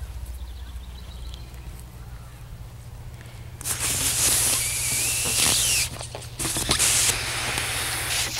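Breath blown hard into a long rubber balloon to inflate it: after a faint low hum, loud rushes of air begin a few seconds in, in a few long blows with short pauses between them.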